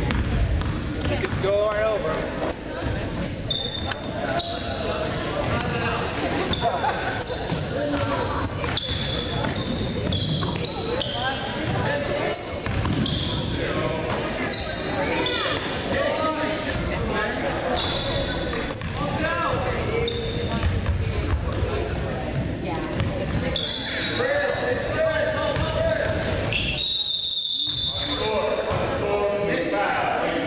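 Basketball being dribbled on a hardwood gym floor, with short high sneaker squeaks and players' and spectators' voices ringing in a large hall. Near the end a referee's whistle blows once, for about a second, stopping play.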